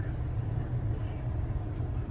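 Steady low engine and road rumble heard inside the cabin of a diesel vehicle as it drives along.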